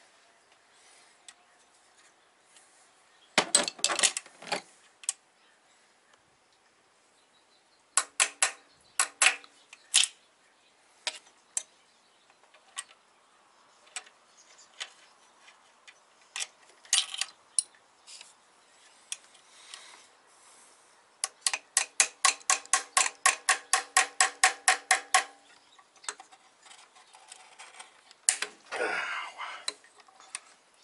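Hand ratchet clicking in short bursts on bolts at the top of the engine, with small metal clinks of tool and bolts. About two thirds of the way through comes a long even run of quick clicks, about five a second.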